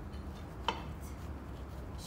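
Faint handling of potting soil as gloved hands press it into a small ceramic pot around a succulent, over a steady low hum, with one short sharp click about two-thirds of a second in.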